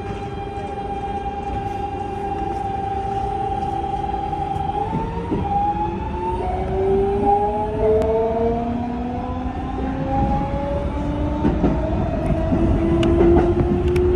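Electric train running, its traction motor whine holding a steady pitch and then climbing slowly from about five seconds in as the train gathers speed, over a steady rumble of rolling wheels.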